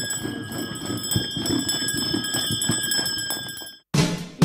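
Sleigh bells on a horse's harness jingling steadily as the horse pulls a sleigh, with the horse's hoof steps underneath. The sound cuts off abruptly just before the end.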